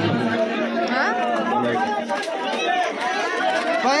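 People's voices chattering, with no single clear speaker.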